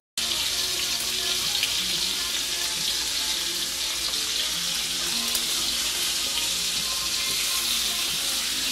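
Ribeye steaks frying in butter in a pan, a steady sizzle that cuts in abruptly just after the start and holds even throughout.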